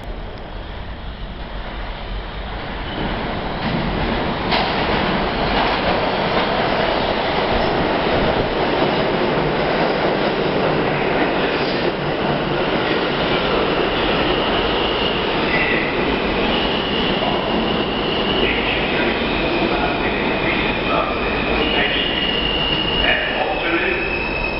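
R160 subway train pulling into the station: a rumble that builds over the first few seconds as it comes out of the tunnel, then the steady din of the cars running along the platform. In the second half, high tones set in over the rumble and change pitch in steps as the train slows.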